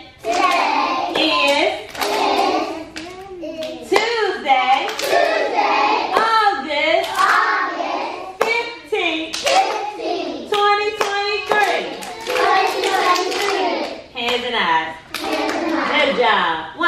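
A woman's voice and a group of young children's voices trading chanted phrases with hand claps, in a call-and-response copying game: the children repeat the teacher's words and claps.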